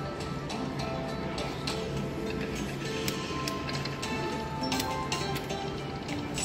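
Aristocrat Eyes of Fortune Lightning Link slot machine playing its free-spin bonus music: held melodic notes over a run of short clicks as the reels spin and stop.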